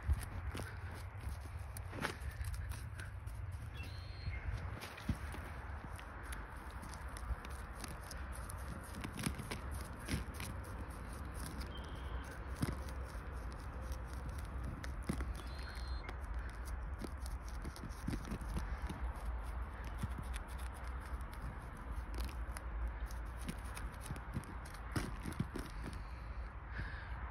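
A wooden stick scraping and picking into the potting soil of a black walnut root ball, crumbling it loose with soft irregular scratches and small ticks over a low steady rumble.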